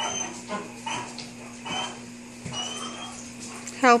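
Great Dane panting after running zoomies, quick breaths about twice a second, with a few thin high-pitched whines among them.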